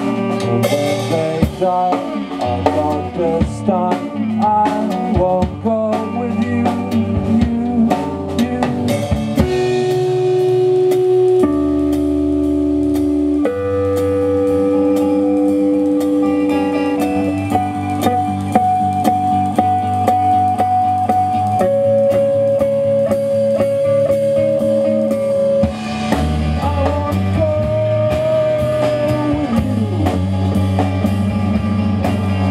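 Live rock band playing an instrumental passage on electric guitars and drum kit. Busy drumming and guitar lines give way about ten seconds in to long held notes that change every few seconds over quieter drums, and the full drumming returns near the end.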